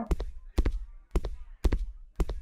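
Footstep sound effects from a first-person walk through a 3D game-engine visualization: regular steps, about two a second.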